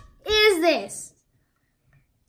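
A child's voice: one short exclamation lasting under a second, then quiet.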